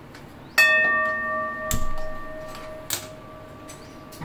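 A metal kadhai on a gas stove knocked so that it rings with a clear, bell-like tone that fades over about three seconds, with a dull thud partway through and a sharp click near the end.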